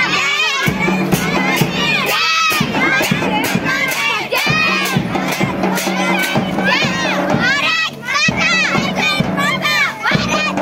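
A group of children shouting slogans together as they march, their voices loud and overlapping, with hand cymbals clashing in a regular beat underneath.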